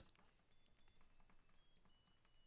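Small piezo speaker driven by a micro:bit, faintly beeping a quick run of short, high notes of changing pitch as the push buttons of a homemade button keyboard are pressed.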